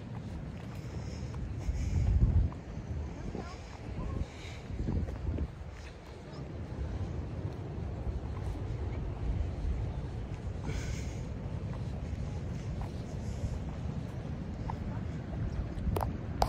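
Wind buffeting the microphone, with gusts about two seconds and five seconds in, over the steady rush of water from the river mouth running out to the sea.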